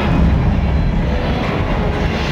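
Loud, deep, steady rumbling roar from a staged fire-effects show, with gas flames burning on the set.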